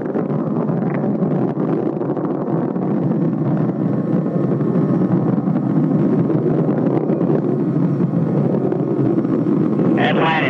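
Steady, loud roar of a Space Shuttle solid rocket booster in powered ascent, picked up by the booster-mounted camera: rocket exhaust and rushing airflow, with no breaks or distinct events.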